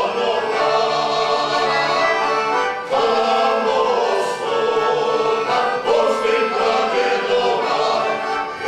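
A men's folk vocal group singing together in full voice, accompanied by an accordion. The song moves in phrases, with short breaths about three and six seconds in before each new line.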